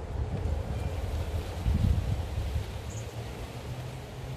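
Wind buffeting the microphone, a low rumble that swells with a gust about halfway through.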